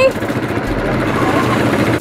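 Quad bike engine idling steadily, with faint voices in the background.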